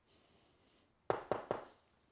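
Three quick, sharp knocks in close succession about a second in.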